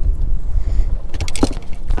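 Wind rumbling on the microphone over the running noise of a fishing boat on open water, with a brief clatter of sharp clicks a little past the middle, from gear being handled in the boat.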